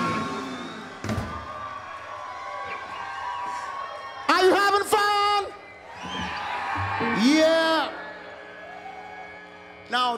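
Live band's song ending, its last chord ringing out over a held note. Then a voice calls out twice in long, loud whoops that bend up and fall away, about four and seven seconds in.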